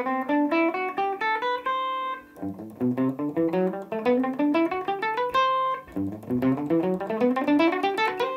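Electric guitar, a Les Paul-style single-cut, playing a scale note by note with a pick: three quick ascending runs, each ending on a briefly held note. The scale is fingered with uneven notes per string, so the picking falls into a down, up, down, down pattern.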